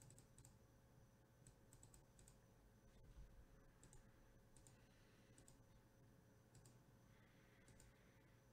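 Near silence with faint, scattered computer mouse clicks, several coming in quick pairs or threes.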